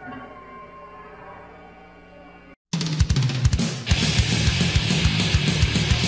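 A fading, ringing sustained sound, a short break of silence, then a death metal band starting up about two and a half seconds in: fast, regular kick-drum beats with cymbals, the full band with distorted guitar coming in about a second later.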